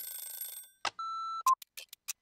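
Electronic transition effects: a high ringing tone fades out, then a click and a short steady beep. About one and a half seconds in, a fast clock-like ticking starts with a blip, about six ticks a second, opening an intro jingle.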